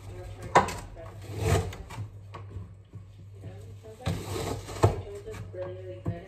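Kitchen knife cutting fruit on a cutting board: a few separate knocks as the blade meets the board.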